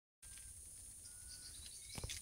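Faint outdoor ambience: a steady high-pitched insect drone with a few faint, distant bird chirps and whistles over a low wind rumble, and a soft knock near the end.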